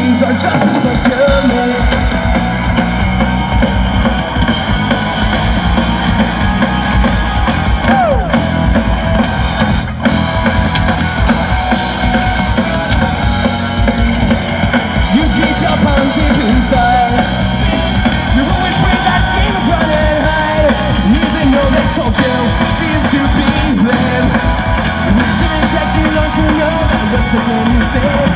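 Pop-punk band playing live: electric guitars, bass and drum kit at full volume, with a lead vocal singing over them.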